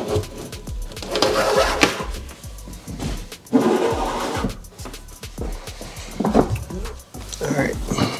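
A plastic golf tube being pushed and scraped through a hole sawn in an aluminum boat bench, in a few bursts of rubbing, with background music underneath.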